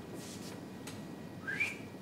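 A pause with low room noise, broken about one and a half seconds in by one short, high squeak that rises in pitch.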